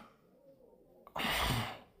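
A single breathy sigh from a man's voice about a second in, after near silence, in an exasperated pause while begging.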